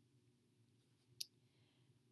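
Near silence, with one short sharp click about a second in.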